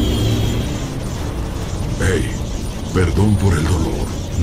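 Animation soundtrack with a steady low rumble, joined by a man's voice about halfway through.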